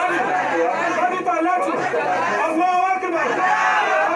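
Speech: a man praying aloud in Yoruba into a microphone, amplified, with the voices of a gathered crowd beneath.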